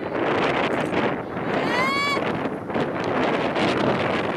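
Wind rushing on the microphone outdoors, with one short high-pitched shout that rises and then holds, about halfway through.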